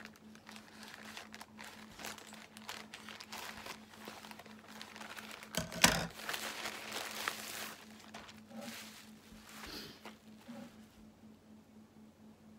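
Packaging of a posted parcel being cut and unwrapped by hand: crinkling and rustling with scattered clicks, loudest in a sudden crackle about halfway through, then quieter near the end.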